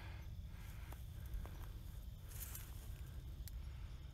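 Faint footsteps and legs brushing through dense tall grass and weeds, with a steady low rumble underneath.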